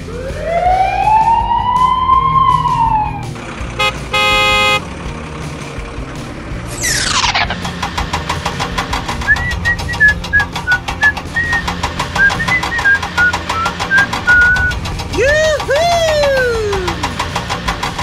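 A string of dubbed-in cartoon sound effects: a slow rising-then-falling whistle glide, a short beep, a fast falling whistle, then several seconds of rapid ratchet-like clicking with little chirps, and more falling glides near the end.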